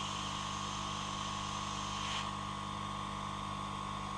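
Yihua 968DB+ hot air gun blowing steadily onto a solder-filled bullet connector: an even whir and hiss with a faint constant hum.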